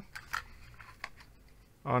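Faint handling noise of small keyboard accessories and a braided cable being moved about in their box: a few light clicks and rustles, most of them in the first half second. A man's voice starts with "Oh" at the very end.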